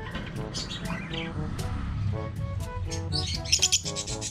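Bird chirping in a rapid run of high, shrill calls that starts about three seconds in and is the loudest sound, with a fainter high call near one second, over background music.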